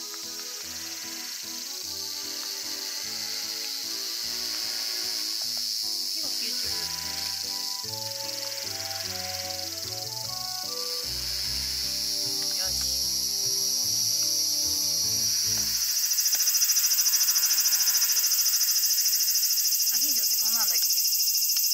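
A steady, high-pitched chorus of insects shrilling outdoors, which gets louder about 16 seconds in. Under it, background music with a stepping melody and bass line plays and ends at about the same moment.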